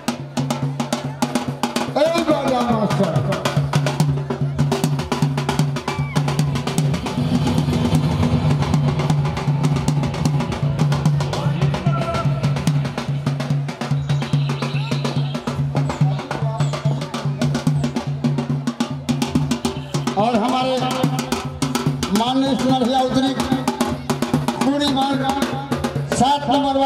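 Drumming in fast, dense strokes throughout, with men's voices calling over it and a steady low hum underneath; the voices come forward near the end.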